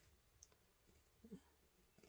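Near silence: quiet room tone with a couple of faint clicks, one about half a second in and a softer one a little after a second.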